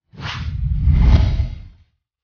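A whoosh transition sound effect with a deep rumble underneath, swelling to its loudest about a second in and then fading away.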